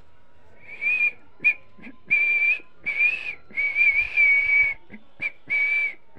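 Someone whistling in a run of short, breathy phrases, high in pitch and wavering only a little, the longest note held about a second in the middle.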